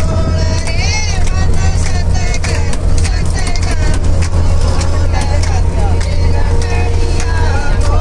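A group of women singing together and clapping along inside a moving bus, with the bus engine's steady low drone underneath.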